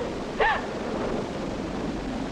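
A steady rushing noise, like wind or soundtrack hiss, with a short vocal sound about half a second in.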